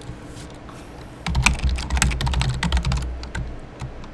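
Typing on a computer keyboard: a quick run of keystrokes starts just over a second in and eases off about three seconds in.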